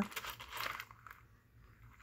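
Faint rustling and a few light clicks of a charm dangle's metal charms and glass beads being handled on its cardboard card, dying away about a second in.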